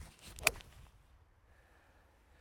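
TaylorMade Tour Preferred CB iron striking a golf ball off turf: a short swish of the downswing, then one sharp click of impact about half a second in.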